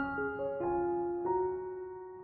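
Background piano music: a short run of soft notes at the start, then held notes slowly fading.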